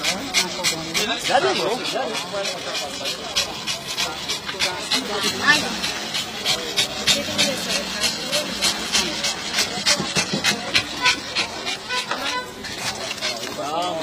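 Small long-haired dog panting hard and fast, several quick breaths a second, overheated from being shut in a hot car boot.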